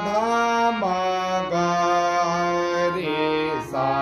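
Harmonium playing a slow melody in Raag Khamaj, the sthayi of a sargam geet, as sustained reed notes that change every second or so, with a brief drop in level shortly before the end.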